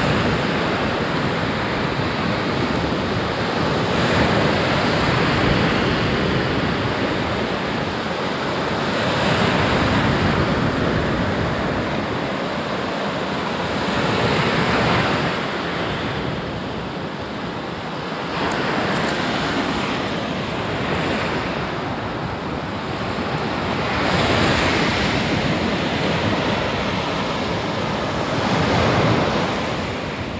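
Small Aegean waves breaking and washing up a sandy beach, the surf swelling and easing about every five seconds.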